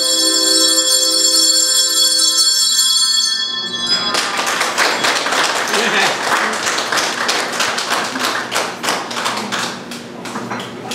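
A handbell choir's last chord rings and fades out over about three and a half seconds, then applause starts and carries on.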